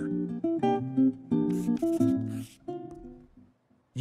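A short recorded acoustic guitar phrase of plucked notes, several different pitches in quick succession, fading out shortly before the end.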